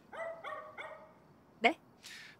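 A small dog yapping: four quick, high yips in about a second, fainter than the voices around them.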